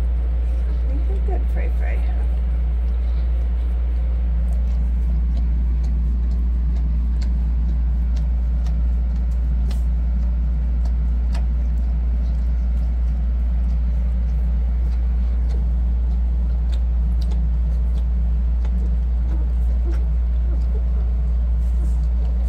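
A steady low hum at an even level, with faint scattered clicks as week-old puppies suckle, and a couple of brief high squeaks in the first two seconds.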